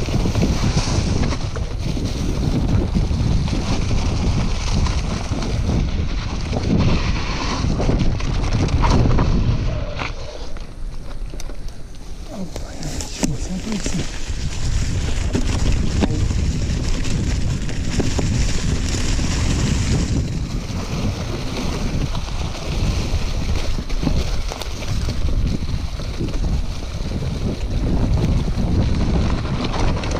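Wind buffeting an action camera's microphone on a mountain bike riding at speed, with the tyres rolling over dry fallen leaves and forest floor. The rush is loud and continuous, easing for a few seconds about ten seconds in before building again.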